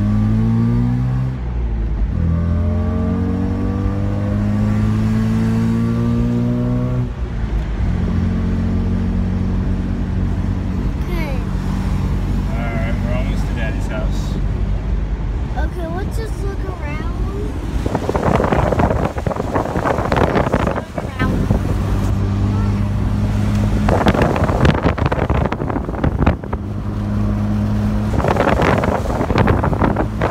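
First-generation Mazda RX-7's carbureted rotary engine heard from inside the cabin, pulling up through the gears with its pitch rising, then dropping at a shift about seven seconds in and settling to a steady cruise. In the second half, loud gusts of wind and road noise rise over the engine three times.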